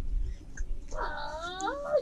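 A single high-pitched, wavering cry about a second long, starting near the middle and gliding up and down in pitch.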